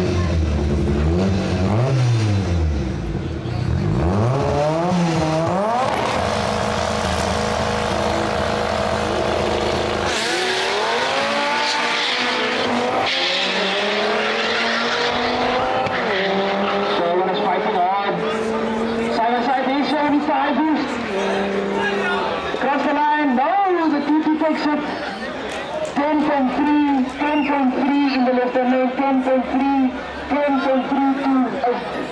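Two drag-racing cars, an Audi TT one of them, revving at the start line and then launching, their engines accelerating hard with the pitch climbing and falling back through several gear changes as they pull away down the strip and fade.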